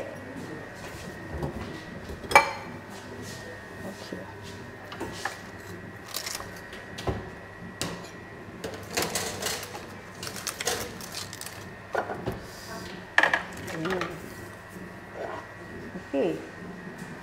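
Intermittent clinks and knocks of serving utensils against dishes as cooked chicken is moved onto a plate, the loudest knock about two seconds in and a cluster of clatter near the middle and again about thirteen seconds in.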